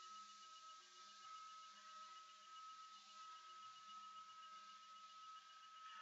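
Near silence: room tone with a faint steady high-pitched tone.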